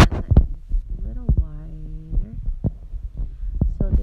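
A speaker's drawn-out hesitation sound, a held 'mmm' of about a second, among a series of short low thumps and clicks over a steady low hum.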